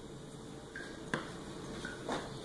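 Quiet room with a faint short tick about once a second and one sharper click a little past halfway.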